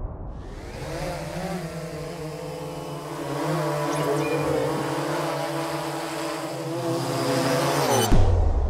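Quadcopter drone propellers whirring: a steady buzz of several tones together that wavers in pitch about a second and a half in, grows louder midway and rises slightly before cutting off sharply at the end.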